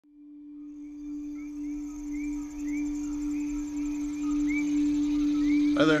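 A single steady low tone fades in from silence and is held, like a struck singing bowl. Above it, short rising chirps repeat several times a second, like birds or insects in woods. A voice begins right at the end.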